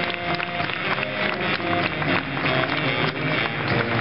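Live big band jazz: a baritone saxophone solo over the rhythm section with upright bass.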